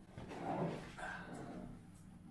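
A dog whimpering quietly, with a short, thin whine a little after a second in.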